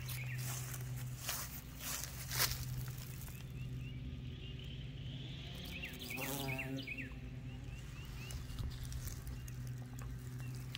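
Low steady buzz of a bumblebee working the flowers close by. Over it a small bird chirps in quick repeated notes near the start and again about six seconds in, with a few soft clicks of handling early on.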